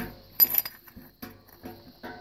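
Light metallic clinks as a hand-cut aluminium spacer plate is handled against the top plate of a caster: one sharper clink about half a second in, then a few fainter taps.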